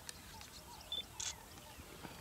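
Quiet outdoor bush ambience: faint short high chirps and scattered clicks, with a brief soft hiss a little past the middle.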